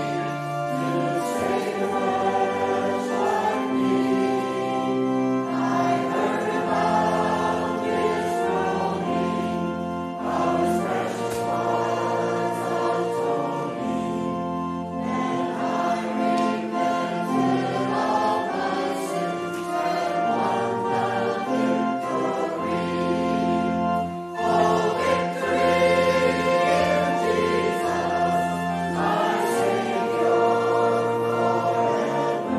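Church choir and congregation singing a hymn together, with held notes changing every couple of seconds.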